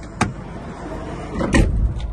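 A van door on a Ford Tourneo Custom minibus: a sharp latch click, then a heavier thump about a second and a half in, over a steady low hum in the cabin.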